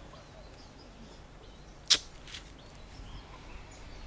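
Faint outdoor background with a single sharp, very brief click or snap about two seconds in.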